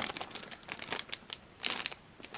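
Small clear plastic bag crinkling as it is handled, a run of irregular crackles with a louder rustle near the end.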